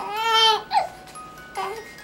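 Young baby vocalizing in high-pitched, drawn-out coos: one long call at the start and two short ones later. Behind it, a crib mobile plays a faint chiming tune.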